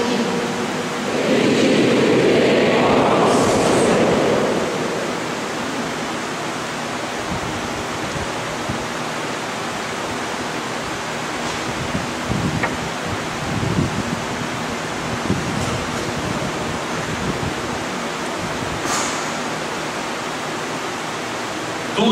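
Steady hiss of room noise in a large church, with a louder swell of congregation noise in the first few seconds and a few faint knocks later on.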